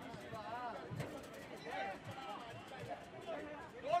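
Faint pitch-side sound from a football match: distant shouts and calls of players on the field, with one sharp knock about a second in.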